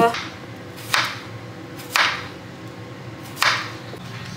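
Kitchen knife chopping a cucumber on a plastic chopping board: four sharp chops, roughly a second apart.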